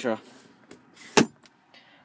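One sharp click about a second in, in a quiet car cabin, after the tail of a man's word at the start.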